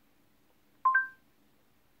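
Short rising two-note chime from Google Assistant through the car's infotainment speakers, sounding once just under a second in to acknowledge a spoken voice request.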